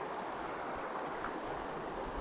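Shallow creek running over rocks, a steady rush of flowing water.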